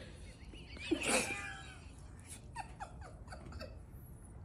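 An animal's call about a second in, followed by a quick run of about five short, falling squeaks.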